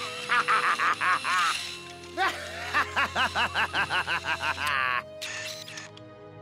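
Cartoon background music under two runs of rapid, high-pitched cackling laughter, each lasting about a second and a half to two seconds.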